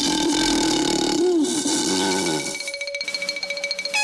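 Cartoon lion's roar: a low, wavering growl that starts suddenly and lasts about two and a half seconds over background music. The music carries on alone after it.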